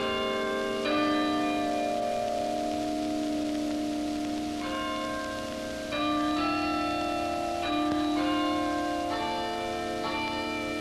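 A chime of bells playing a slow tune, a new note struck about every second, each ringing on under the next.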